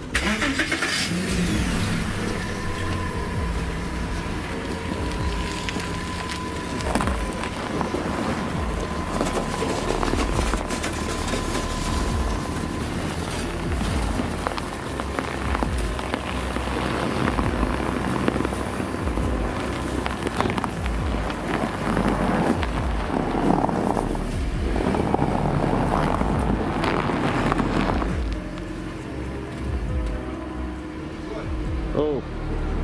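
Volkswagen Touareg SUV engine running as the car is driven slowly out of a garage onto snow. A steady high tone sounds from about two seconds in until about twelve seconds in.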